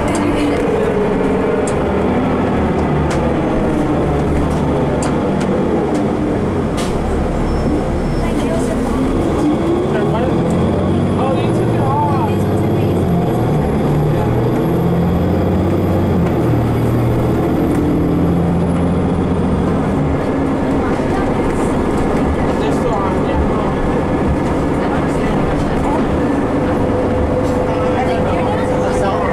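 Interior sound of a 2015 Nova Bus LFS city bus under way: the diesel engine and drivetrain run steadily, the engine note shifting in pitch several times. A faint high whine rises in about ten seconds in and fades out about ten seconds later.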